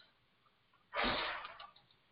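One short, breathy noise from a person at the microphone about a second in, in a pause between sentences; no words are spoken.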